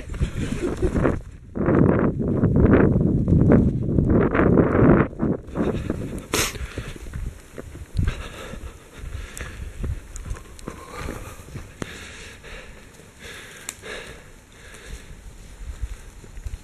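A runner's footsteps on a dirt forest trail, with the carried camera rubbing and buffeting on the microphone, loudest and roughest in the first five seconds. A single sharp click comes about six seconds in.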